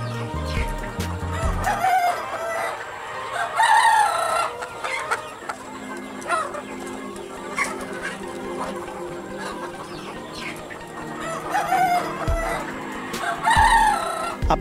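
A flock of desi chickens clucking and calling several times over, in short separate calls. Background music plays underneath.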